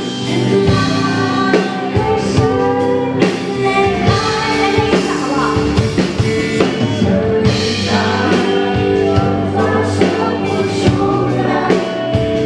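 A woman singing live into a handheld microphone over a band with a drum kit, the voice sustaining and bending long notes over steady chords and regular drum hits.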